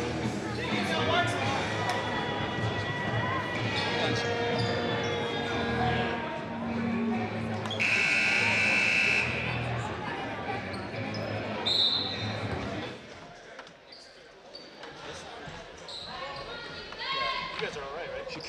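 Gymnasium crowd chatter and a basketball bouncing on a hardwood court, with a loud buzzer-like tone sounding for about a second partway through. The sound drops off noticeably near the end.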